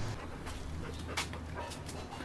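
Two dogs close by making quiet sounds, with a few faint short clicks and a steady low hum underneath.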